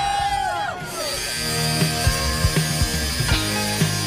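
A group of people cheering and shouting in the first second. Then background music with a beat plays over an angle grinder cutting steel, its steady high whine running under the music.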